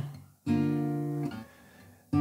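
Gypsy jazz acoustic guitar: a three-note chord voiced with its bass on the fifth string. It is struck about half a second in, rings steadily for about a second, then is damped and fades out.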